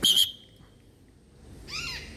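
A parrot calling in free flight: a short run of harsh, arching screeches near the end, with a loud sharp burst right at the start.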